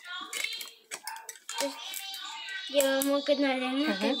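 A child's voice, then singing with music: a melody with notes held for about a second begins near the end. Light clicks of hands handling a cardboard tube are scattered through it.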